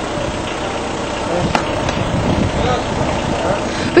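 Indistinct voices over a steady rumbling background noise, with a single sharp click about one and a half seconds in.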